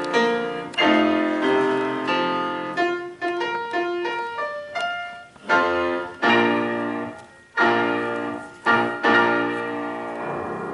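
Grand piano played four-hands by two pianists: full ringing chords, a lighter run of single notes around the middle, then a series of loud struck chords toward the end.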